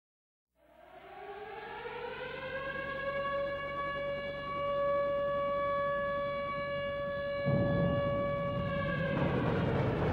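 A siren winding up in pitch over about two seconds and then holding one steady wail. About three quarters of the way through, a loud deep rumble comes in and the siren fades under it.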